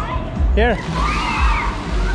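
Splash-pad fountain jets spraying water onto wet paving, heard under background music and voices.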